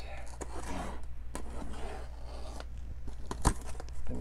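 Craft knife slicing through clear packing tape along the seam of a corrugated cardboard box, a dry scraping and tearing, broken by a few sharp clicks and a louder click about three and a half seconds in.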